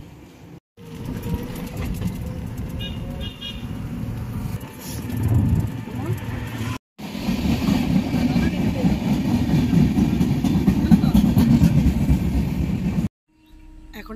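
Passenger train coaches rolling past close by, a loud steady rumble of wheels on the rails through the second half. Before it comes a separate stretch of traffic noise with a brief high horn toot about three seconds in.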